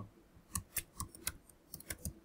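Computer keyboard keys clicking: about eight quick, uneven keystrokes as a word is typed.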